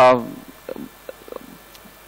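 A man's speaking voice trailing off at the end of a word, followed by a pause holding only a few faint, short low sounds.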